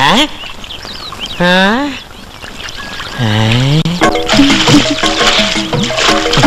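Two short drawn-out vocal exclamations with gliding pitch, the second lower and swooping down then up. Film background music with held notes and light percussion comes in about four seconds in.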